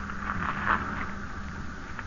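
Steady hiss with a low mains hum from an old broadcast transcription, with no distinct event.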